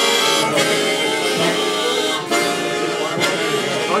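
A group of harmonicas playing together, among them long chord harmonicas, sounding reedy held chords with brief breaks between phrases.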